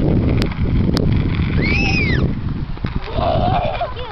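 A child's high-pitched squeal, rising and then falling, about halfway through, over a low rumbling noise with a few clicks; a shorter, lower vocal sound follows near the end.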